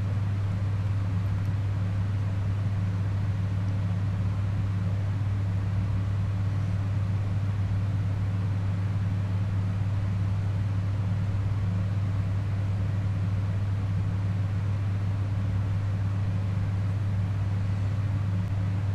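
Steady low hum with a faint hiss over it, unchanging in level throughout.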